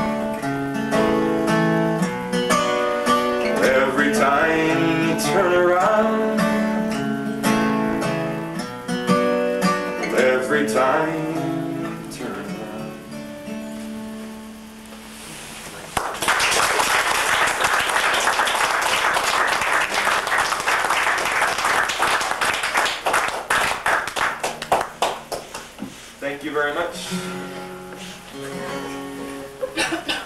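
Solo acoustic guitar picking out the closing passage of a tune, thinning and getting quieter. About 16 seconds in, audience applause breaks out and lasts about ten seconds. After that, a few guitar notes are picked softly again.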